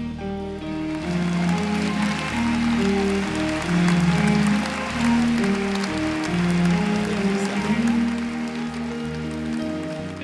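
Live band playing a slow instrumental passage of long held melody notes, with audience applause over it.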